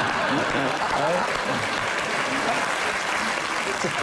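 Studio audience applauding and laughing.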